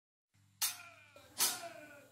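A quiet count-in before a rock band starts: short beats about every three-quarters of a second, each with a sharp start and a slightly falling pitched tone, over a faint low hum.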